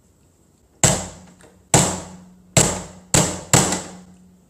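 Small wooden mallet striking a hard chocolate-shell dessert ball on a tray: five sharp knocks, each ringing out briefly, the last two coming close together.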